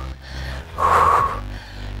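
A woman's short, forceful breathy exhale about a second in, from the exertion of jump squats, over background music with a steady low beat.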